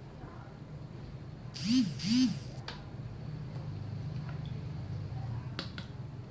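Two short electronic beeps, each rising and then falling in pitch, from a handheld electric skin-care wand held against the face.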